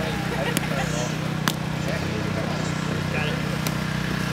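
A few sharp taps of a footbag being kicked in a footbag net rally, over faint chatter of onlookers and a steady low hum.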